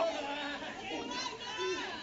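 Indistinct chatter of voices, with no single clear speaker and no impacts.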